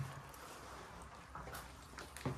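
Quiet background: a faint, steady low rumble with no distinct sound event.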